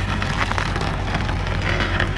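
Fecon Stumpex cone-shaped stump cutter boring into a tree stump: a dense crackling of wood being shredded over the steady hum of the carrier machine's engine.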